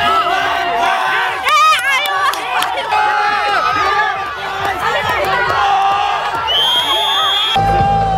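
A crowd cheering and shouting over background pop music with a steady beat; the music gets louder near the end.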